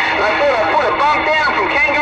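Garbled, unintelligible voice coming in over a CB radio's speaker, over a steady hiss and a steady low tone.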